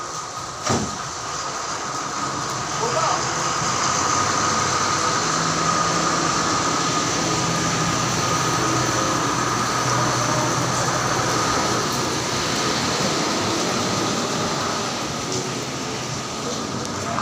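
A steady engine-like running noise with a hiss over it, growing louder a few seconds in, and a single sharp knock just under a second in.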